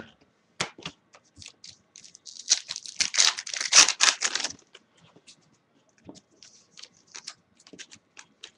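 Plastic wrapper of a Bowman baseball card pack being torn open and crinkled for about two seconds, with scattered light clicks and flicks of the cards being handled before and after.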